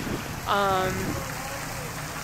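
A woman's voice, one short vocal sound about half a second in, over a steady rushing background noise.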